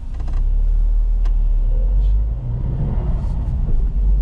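Cabin sound of a Seat Ibiza's 1.8 20-valve turbocharged four-cylinder engine and road rumble as the car pulls forward in traffic. The engine note rises over the last couple of seconds.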